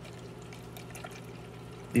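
Tap water poured steadily from a glass measuring cup into a plastic fuel funnel, splashing onto the funnel's filter and filling its sediment bowl; a faint, even pour.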